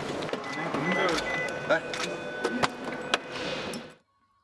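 Indoor hallway ambience: background voices over a steady hum, with several sharp clicks and knocks as suited people walk past, fading out near the end.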